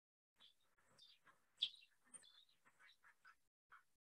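Faint, scattered bird calls, short chirps over near silence, the loudest about one and a half seconds in.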